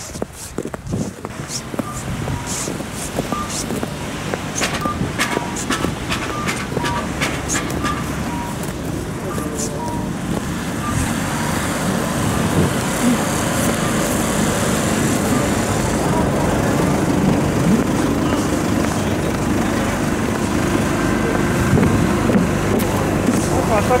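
Footsteps on packed snow as short crunches for the first ten seconds or so, then a steady rumble of work-vehicle and machinery engines that grows louder, with voices in the distance.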